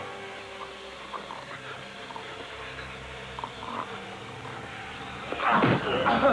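A man's short pained grunts and strained breaths, then a louder strained groan near the end.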